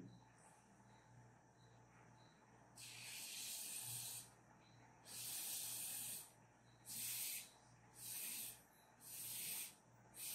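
Breath blown through a drinking straw onto wet paint to spread it across paper (straw blow-painting). After about three seconds of near silence come five separate puffs of breathy hiss, each half a second to just over a second long.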